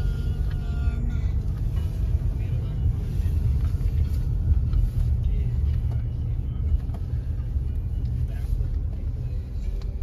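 Low, steady rumble of a car driving slowly, heard from inside the cabin.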